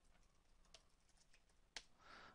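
Faint computer keyboard typing: a few scattered key clicks, the loudest one near the end.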